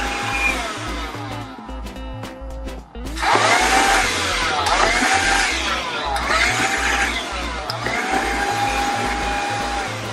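A Black & Decker Dustbuster 3.6 V cordless hand vacuum running on a tiled floor: a steady motor whir and rush of air. Background music with a steady beat plays over it.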